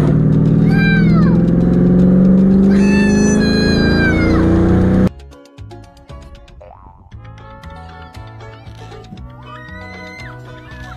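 A car engine accelerating hard, heard from inside the cabin, its pitch rising steadily for about five seconds while a small child shouts "No!". It cuts off suddenly into quieter background music.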